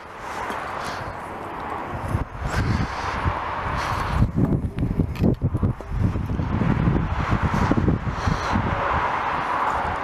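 Wind gusting on the microphone: an uneven low rumble over a steady rushing hiss, which grows stronger about two seconds in.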